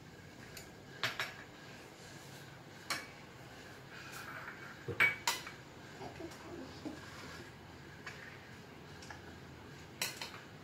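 Spoon clinking against bowls while fruit salad is spooned out: a few scattered light clinks, the loudest two close together about five seconds in.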